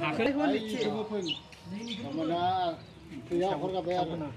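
A man's voice in sing-song, rising and falling speech, with a short bird chirp about a second in.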